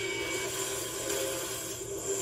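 Movie trailer soundtrack heard through the speakers: a held musical chord under a dense hiss of action sound effects.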